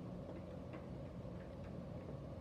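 Small motorized display turntable running: a faint steady low hum with a few soft, irregular ticks.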